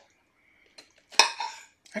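A metal fork clinks once against a dish about a second in, with a short ring.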